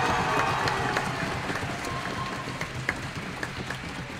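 Audience applause, fading away over a few seconds.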